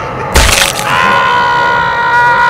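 Logo-sting sound effect: a sudden loud crack about a third of a second in, followed by a held, ringing chord of high tones.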